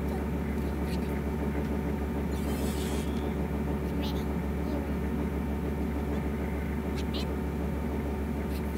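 Cartoon character voices from an episode playing on a computer, over a steady low electrical hum, with a brief hiss a few seconds in.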